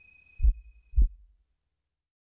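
Two deep, low thumps about half a second apart, a heartbeat-style sound effect.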